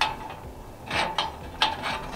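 A few light metallic clicks and taps from the folding wire garbage-bag holder and steel frame of a camp table being handled.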